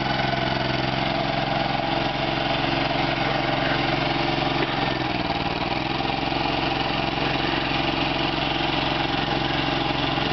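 Compact tractor with a front-end loader, its engine running steadily at low speed, with a slight change in pitch about five seconds in.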